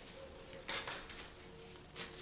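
A deck of oracle cards being shuffled in the hands, with one short papery rustle about two-thirds of a second in and otherwise only faint handling.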